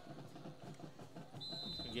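Stadium crowd murmur, then about one and a half seconds in a referee's whistle sounds one steady, high blast, blowing the short kickoff return dead.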